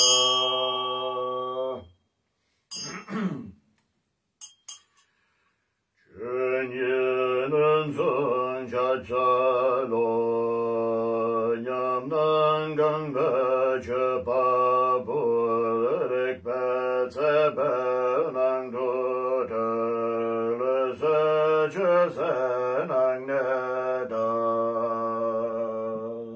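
A man chanting a Tibetan Buddhist mantra in a steady, near-monotone recitation, starting about six seconds in after a short pause. At the start a hand bell's ringing and the previous line of chant die away, and there is a brief throat clearing about three seconds in.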